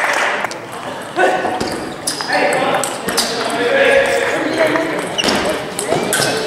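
Scattered sharp clicks of celluloid table tennis balls striking bats and tables, echoing in a large sports hall over a steady murmur of voices.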